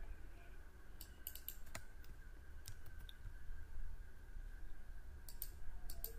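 A few separate computer keyboard and mouse clicks, faint and spaced out, with a small cluster about a second in and another near the end. Under them runs a steady faint high whine and a low hum.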